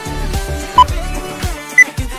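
Workout interval-timer countdown beeps over background music: a short beep a little under a second in, then a higher-pitched beep near the end that marks the end of the rest period.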